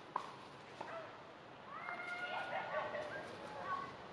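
A sharp click just after the start, then about two seconds of high, whining animal calls held on steady pitches that step up and down.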